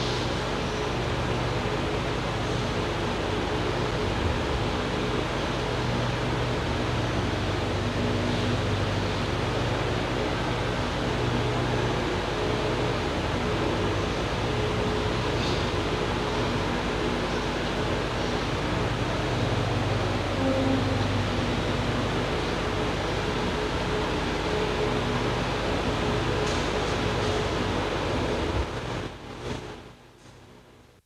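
Steady hiss with a low hum of room noise, no voices; it drops away to near silence near the end.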